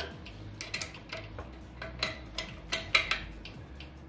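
Hand wrench giving the bolts of a steel pellet-stove burn pot a final tightening: a string of irregular metallic clicks and ticks, a few a second.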